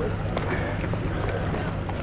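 Steady low hum of boat outboard engines idling around the dock, with faint voices in the background.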